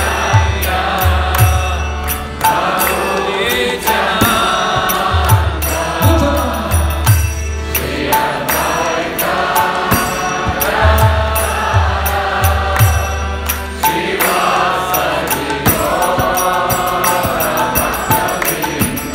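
Kirtan: a mantra chanted in phrases two to three seconds long over a harmonium, with low beats underneath and high cymbal-like clicks keeping a steady beat.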